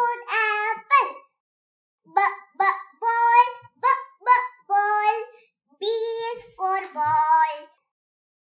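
A child's voice singing short, chant-like phrases, one at the start, then a pause of about a second, then a run of several more.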